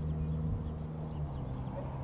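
Vehicle engine idling: a low, steady hum whose pitch steps down slightly about half a second in.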